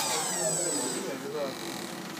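Circular blade of a roll protective-film cutting machine winding down after a cut. The loud cutting noise breaks off at the start, leaving a fading whine that slides down in pitch.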